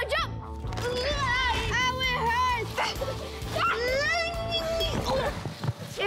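Children's wordless high-pitched shouts and squeals, several long calls that rise and fall in pitch, over background music with a steady beat.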